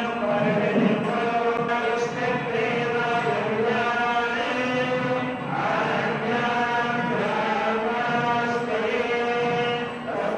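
Vedic mantras chanted by temple priests, a steady recitation in long held phrases with brief pauses.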